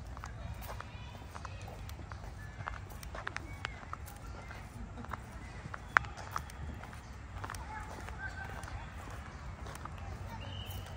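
Footsteps on a park path, irregular sharp steps with one louder knock about six seconds in, over a steady low rumble, with faint distant voices.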